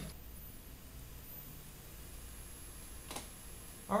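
Quiet room tone with a low steady hum, and one faint click a little after three seconds in.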